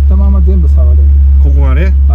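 A 1981 Isuzu Piazza XE's G200 four-cylinder engine idling, a steady low hum heard from inside the cabin.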